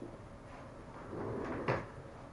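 Tools being handled: a short rustle followed by one sharp clack near the end, as a hand tool is set down or picked up.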